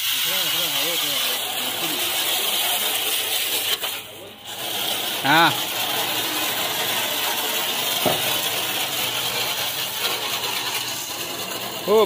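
Water jet from a 12 V DC portable pressure washer spraying against a car's bodywork and wheel arch, a steady hiss that breaks off briefly about four seconds in and then resumes.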